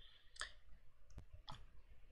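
Three faint computer mouse clicks, about a second apart and then a quick third, as PowerPoint slides are moved through.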